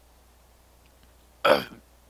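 A man burps once, short and loud, about a second and a half in, just after gulping from a bottled drink.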